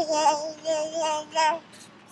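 A high voice singing four short, held notes in a sing-song tune, all near one pitch.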